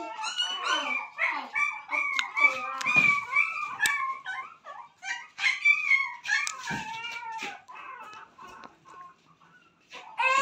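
Young puppies whining and yelping in short, high-pitched squeals, several in quick succession, tailing off to faint whimpers in the last few seconds.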